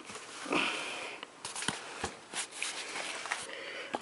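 A cardboard shipping box being handled and worked open: rustling scrapes with scattered light clicks and taps, and a short hissing scrape about half a second in.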